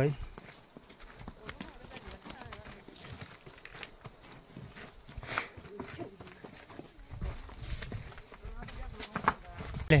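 Water buffalo walking on a stony dirt path: an irregular scatter of hoof clops and scuffs, with a few duller thuds late on.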